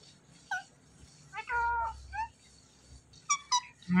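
Indian ringneck parakeet making a few short meow-like calls, mimicking a cat, with two sharp high chirps near the end.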